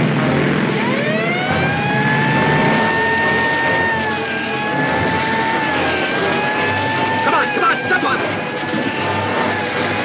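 Police motorcycle siren winding up about a second in and then holding a steady wail with small dips in pitch, over the motorcycle's engine running.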